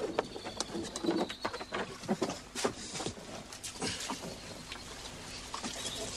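Scattered, irregular wooden knocks and creaks of a rowing boat and its oars coming alongside a wooden landing stage.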